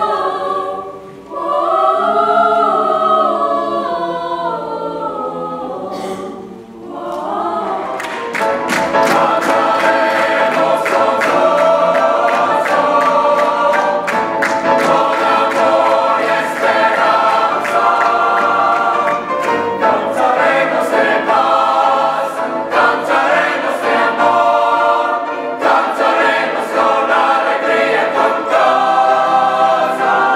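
Mixed choir singing sustained, slowly moving chords. About seven seconds in, after a cut, it goes into a fast rhythmic piece with sharp hand claps in time with the singing.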